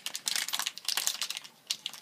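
A foil blind-bag packet crinkling as it is pulled open by hand: a quick run of sharp crackles that thins out in the last half-second.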